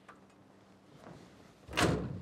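The rear access hatch lid on top of a Claas Trion combine harvester swung shut, landing with one loud slam near the end.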